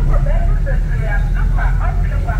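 Car driving, heard from inside the cabin: a steady low engine and road rumble, with indistinct voices talking over it.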